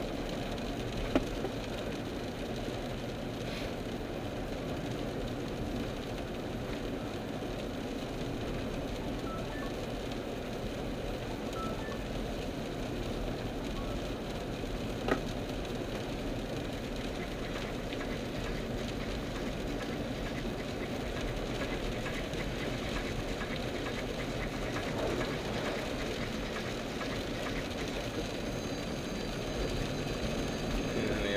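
Steady road and engine noise inside a car cabin while driving on a rain-soaked road, with tyre spray hissing. Two short sharp clicks sound, one about a second in and one about halfway through.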